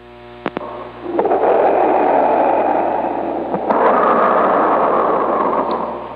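CB radio receiver carrying stations keyed down against each other: a low buzz at first, then from about a second in a loud steady rushing noise, which widens and brightens a little past the halfway point as another signal comes over the top.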